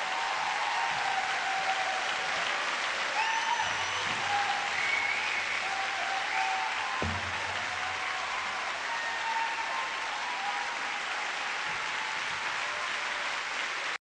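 Concert audience applauding steadily, with a few faint held notes sounding over the clapping.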